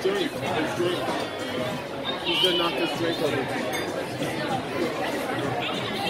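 Indistinct chatter of voices around the table and from nearby diners in a restaurant, with no clear words, running at a steady level.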